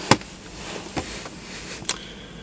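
Three short, sharp clicks and taps from a plastic food container being handled and opened. The first is the loudest; the others come about a second in and near the end.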